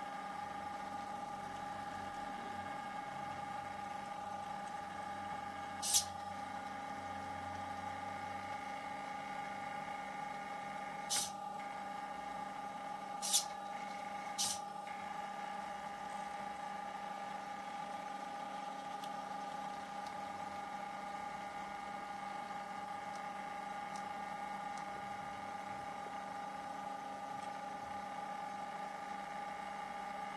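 Stepper motors of a home-built ping pong ball plotter giving a steady whine of several high tones while the ball turns under the felt pen. Four sharp clicks come in the first half, as the servo lifts the pen arm and sets it down again.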